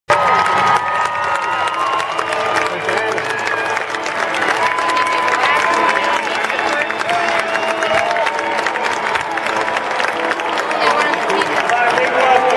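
Stadium crowd cheering and clapping, with many overlapping voices and long high shouts and whoops.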